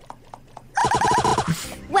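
A horse whinny: a loud, rapidly quavering call lasting under a second, starting about three quarters of a second in, after faint quick ticking. A short laugh follows at the very end.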